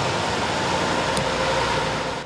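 School bus driving past close by: a steady rush of engine and tyre noise.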